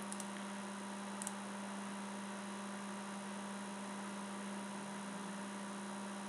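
Steady electrical mains hum in the recording, a constant low tone with fainter overtones, with two faint clicks near the start.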